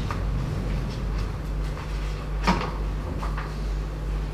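Small handling knocks and rustles at a lectern, with one sharper knock about two and a half seconds in, over a steady low hum of the sound system.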